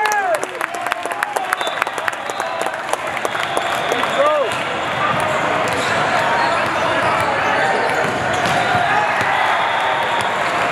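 Crowded sports-hall din of a volleyball tournament: many overlapping voices with sharp ball bounces and claps in the first couple of seconds, and a short squeak about four seconds in, all echoing in the big hall.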